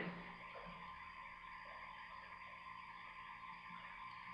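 Faint steady hiss of room tone with a faint steady hum, and no other sound.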